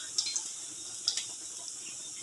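Chopped garlic gently sizzling in hot olive oil in a pan, a steady faint sizzle with a few small crackles.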